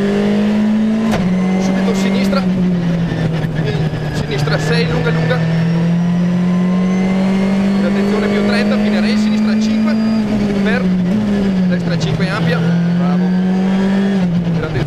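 Skoda Fabia R5 rally car's turbocharged four-cylinder engine heard from inside the cockpit, driven hard on a stage. The revs drop with an upshift about a second in, climb steadily through a long pull in gear, then dip, jump and fall again with further gear changes after about ten seconds.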